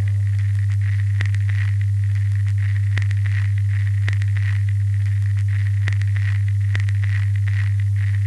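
A steady low hum with faint scattered crackles and clicks over it.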